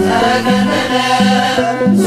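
Ethiopian Orthodox mezmur (hymn): a female singer chants a hymn line over instrumental accompaniment, with a low note pattern repeating about twice a second.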